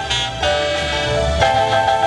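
Live band playing an instrumental passage: held, stepping notes, with a trumpet among the players, over drums and bass; the notes change about half a second and a second and a half in.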